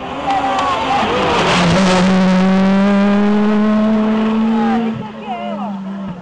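A rally car's engine passing close by at speed: a loud, steady, high-pitched engine note holding for about three seconds, then dropping away near the end.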